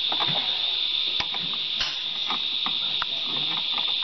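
A few faint metallic clicks from a wrench tightening battery cable terminals, over a steady high-pitched hiss.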